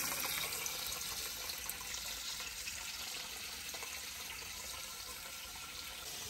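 Water from a hose spray nozzle pouring into an aquarium, a steady rush and splash of a tank being topped off.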